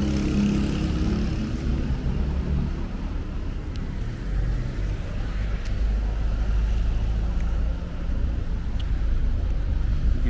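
Street traffic: a car engine running nearby, with a low rumble that grows stronger for a few seconds in the middle.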